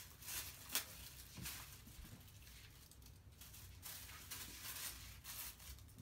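Faint crinkling and rustling of thin white sheet pieces being handled and scrunched together into a flower-petal bundle, with a slightly louder crackle under a second in.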